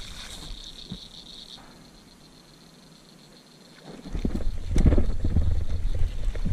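A steady high insect buzz fades in the first second or so, then it goes quiet. From about four seconds in come loud close rumbling and knocks as a small bass hooked on a topwater lure is reeled in through the shallows.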